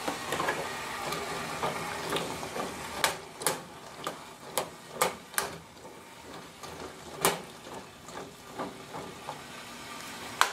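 Scattered small clicks and taps, about a dozen at irregular intervals, as whole cloves are dropped from a spice jar into a steel saucepan of cranberries in hot sugar water, over a faint steady hiss.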